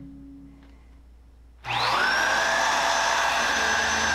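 An upright vacuum cleaner switches on abruptly about one and a half seconds in. Its motor whine rises briefly, then settles into a steady running hum.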